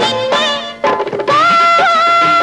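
Instrumental passage of an old Tamil film song: a melody line that breaks off briefly a little before a second in, then a long held note.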